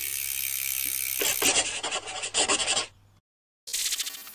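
Rasping, scraping strokes, about six of them in an even rhythm after a second of steady hiss, cutting off abruptly about three seconds in. A short bright metallic burst starts just before the end.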